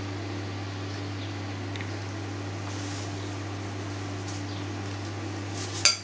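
Steady low hum as a background, with faint small scrapes of a spoon spreading minced meat filling onto a strip of pastry, and one sharp clink near the end as the spoon is put back into the bowl of filling.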